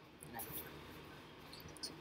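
Quiet speech: a voice softly saying 'right', then 'so' near the end, over faint room noise.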